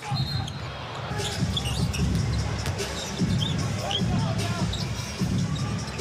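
A basketball being dribbled on a hardwood arena court during live play, with short high squeaks and a steady background of arena noise.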